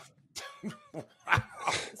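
About five short, breathy bursts of quiet laughter.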